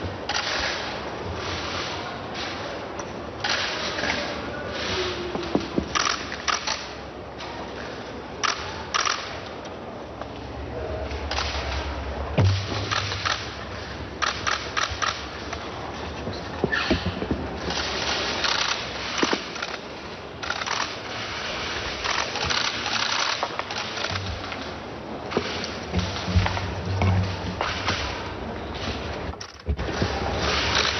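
Many camera shutters clicking, often in rapid bursts, over a steady low hum.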